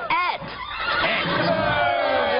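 A horse whinnying: one short, wavering whinny right at the start that falls in pitch.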